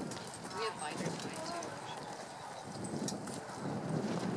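Hoofbeats of a horse cantering on sand arena footing, under faint background voices.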